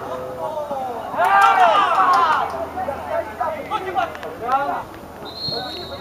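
Shouted calls from players and coaches on a football pitch, one loud call about a second in. Near the end comes a short, steady referee's whistle.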